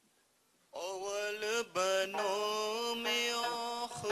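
A voice starts singing a Wakhi song, a chant-like mubarakbad, about a second in. It sings long, wavering held notes over a steady low tone.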